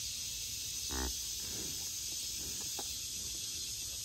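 Steady high chirring of an evening insect chorus, with a short low grunt about a second in.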